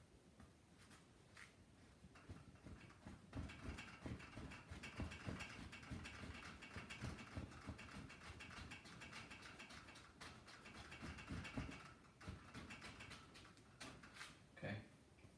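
Paintbrush dabbing and stroking oil paint onto a stretched canvas: a quick, uneven run of soft taps and bristle scratches that starts a few seconds in and eases off near the end.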